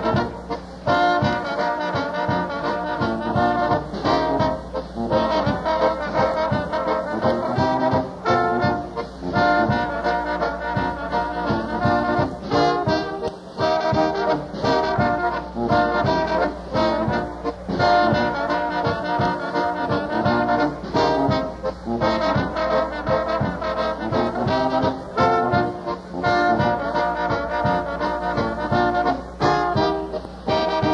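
Old-time polka band playing live, with trombone and brass carrying the tune over a steady beat.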